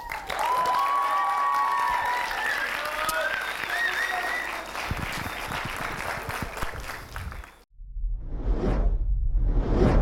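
Audience applauding, with a few whistles or cheers over the clapping. The applause cuts off sharply about three-quarters of the way in and gives way to two swelling whooshes over a deep rumble.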